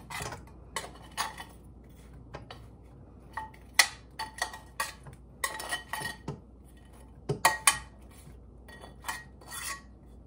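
Kitchen utensil knocking and clinking against a mixing bowl as kielbasa pieces are added to the sauce: irregular, uneven strikes, several with a short ring.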